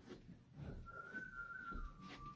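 A person whistling one long, steady note that steps down slightly in pitch partway through, over faint rustling and knocks of handling.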